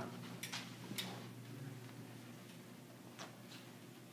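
Quiet room tone with a low steady hum and a few faint, sharp clicks: about half a second and one second in, then twice close together near the end.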